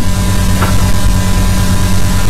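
Loud, steady electrical hum and buzz, with a thin steady tone above it: mains hum in the audio of a studio recording.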